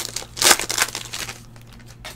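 A trading-card pack wrapper being torn open and crinkled by hand, loudest about half a second in, then quieter rustling as the cards are slid out.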